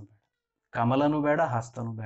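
A man's voice after a brief pause, starting with one long drawn-out syllable that rises and falls in pitch, then going on speaking.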